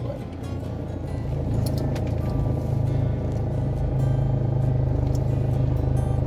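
A car's engine running as it creeps forward in slow traffic, heard from inside the cabin as a steady low drone, with music playing along with it.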